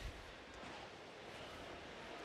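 Faint, steady background noise of a large indoor exhibition hall, with no distinct event.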